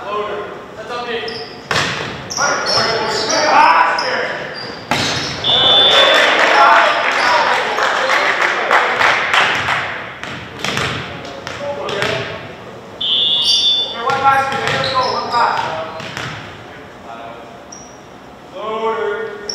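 Volleyball rally in a reverberant gymnasium: a referee's whistle blows twice, about five seconds in and again near thirteen seconds. Between the whistles come sharp hits of the ball, and players and spectators shout and cheer loudly for several seconds as the point is won.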